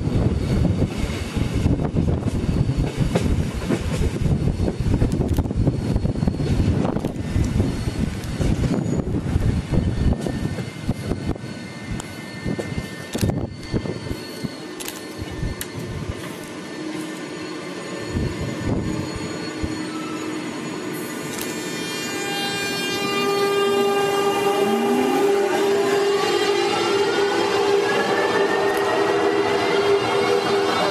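Electric mountain-railway train wheels rumbling and knocking over the rails, quieting as the train slows into a station. From about two-thirds of the way in, an electric train's motors whine, several tones rising steadily in pitch as it gathers speed.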